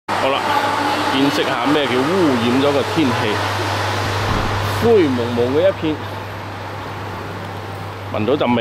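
Roadside traffic noise: a steady rushing din with a low hum underneath, which drops in level about six seconds in. Voices speak over it.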